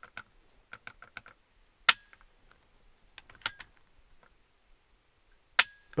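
Mechanical clicks from a sporterized Arisaka Type 30 carbine's action as it is handled. Light clicks come first, then three sharp clicks about one and a half to two seconds apart, the first and last with a brief ring after them.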